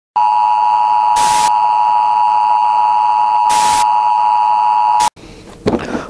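The steady beep of a TV colour-bars test tone, broken twice by short bursts of static hiss, cutting off suddenly about five seconds in.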